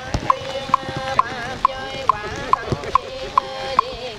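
Several voices chanting a Buddhist prayer together, kept in time by short hollow knocks of a wooden fish (mõ), a little over two knocks a second.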